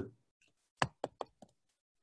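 A pen stylus tapping against a tablet screen while handwriting. There are four short, sharp taps over about half a second near the middle, and the first is the loudest.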